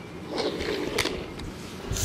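Small die-cast toy cars handled on a wooden tabletop: a light rolling, scraping rustle of little wheels with a couple of soft clicks.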